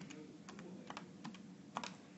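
A handful of faint, quick key clicks, spaced irregularly, as keys are pressed to work out a calculation.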